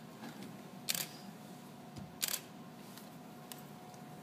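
Two short, sharp clicks, one about a second in and another just after two seconds, over a quiet room with a faint steady hum.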